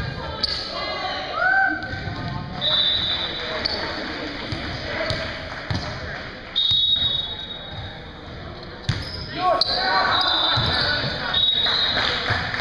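Echoing gymnasium din: voices of players and onlookers talking, a volleyball struck or bounced a few times, and several short high squeaks of sneakers on the hardwood floor.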